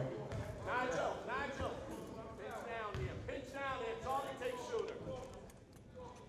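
Voices of people calling out in a gymnasium, coming and going in short phrases.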